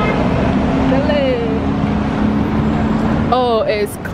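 City street traffic at an intersection: a steady rush of passing cars with a low engine drone through most of it, and a voice cutting in near the end.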